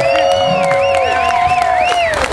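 The last chord of a live song ringing out on a hollow-body electric guitar, held steady and fading near the end, while the crowd cheers and claps. A wavering high tone sounds above it.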